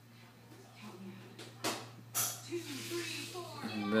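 A few short hissing scrapes from a glass French press being handled as its plunger is pressed, heard about a second and a half in, over a steady low hum.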